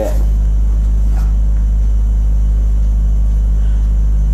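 A steady low hum with no speech, even and unchanging throughout.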